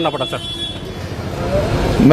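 A motor vehicle's engine running close by, its low rumble growing louder toward the end, amid outdoor street noise.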